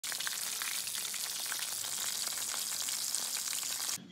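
Battered chicken pieces deep-frying in hot oil in a wok: a steady sizzle with dense crackling and popping, cut off abruptly at the end.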